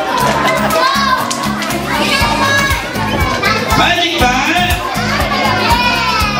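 A crowd of children calling out and chattering together over background music with a steady low bass line.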